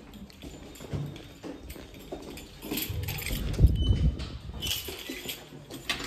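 Handheld phone microphone rubbing and knocking against clothing while it is carried at a walk, with footsteps. The loudest knock comes a little past halfway, followed by a short high squeak.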